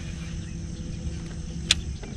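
A steady, high-pitched insect chorus with a low rumble underneath, and one sharp click near the end.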